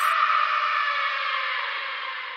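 Techno track in a breakdown with no beat: a reverberant synth wash slowly fades away.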